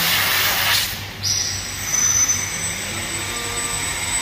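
Washdown hose spraying a jet of water onto a wet concrete floor, cutting off about a second in. A steady machine hum with a high whine carries on underneath.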